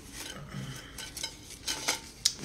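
Light rustling and clattering as a Pringles chip can is handled close to the phone's microphone, the loudest clicks coming near the end.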